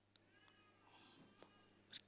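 Near silence: room tone, with a faint, short, high-pitched cry about half a second in.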